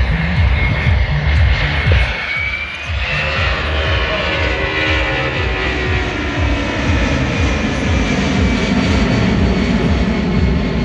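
Boeing 757-200's twin jet engines on a slow, gear-down flyby: a heavy rumble with a whine that slides slowly down in pitch from about three seconds in as the airliner passes.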